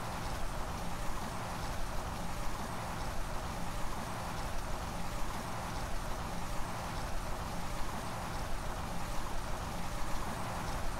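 Steady outdoor background noise with a faint low hum underneath and no distinct events.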